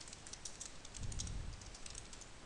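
Computer keyboard typing: a quick, irregular run of key clicks as a word is typed, with a soft low thud about a second in.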